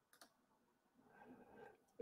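Near silence: room tone with one faint click just after the start.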